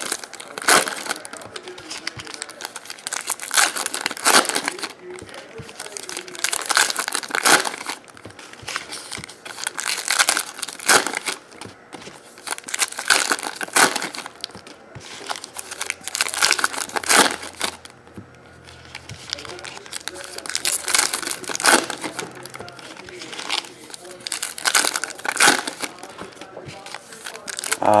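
Foil trading-card pack wrappers being torn open and crinkled by hand, in sharp crackly bursts every second or two.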